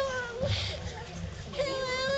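A young child's high-pitched whining voice: a short falling whine at the start, then a longer drawn-out cry about a second and a half in, with people talking around it.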